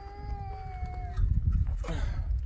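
A puppy whining: one long, steady-pitched whine that stops a little over a second in.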